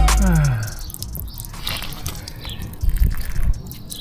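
Background music that cuts off with a falling pitch sweep. Then muddy floodwater dripping and trickling out of a flood-damaged BMW E36's exhaust tailpipe onto concrete, with a few faint knocks.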